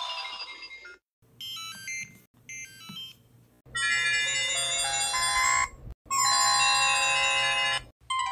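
Motorola mobile phone power-on and power-off jingles. The tail of a startup tune fades in the first second. A short, quiet shutdown jingle of a few electronic notes follows. From about three and a half seconds a louder, brighter startup melody of stepped tones plays, with a short break near six seconds.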